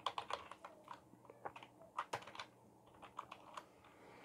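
Faint typing on a computer keyboard: quick, irregular key clicks that thin out over the second half.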